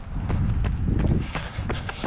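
Wind rumbling on the microphone of a hand-held camera during a run, loudest in the middle, with the light, regular thud of running footfalls on a path.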